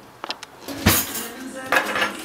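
Dishes and cutlery knocking on a kitchen counter: a couple of light clicks, a loud clatter with ringing about a second in, and another knock near the end.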